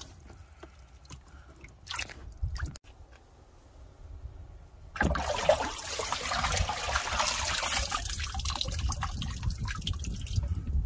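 Hand moving in standing water in a Toyota Prius's spare-tire well, with a couple of small splashes. About halfway through, a steady rush of water starts as it drains out through holes in the well floor.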